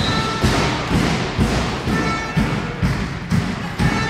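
Handball game sounds in a sports hall: a handball thudding and bouncing on the hall floor in repeated thuds, about three a second, with short high squeaks of sports shoes on the court.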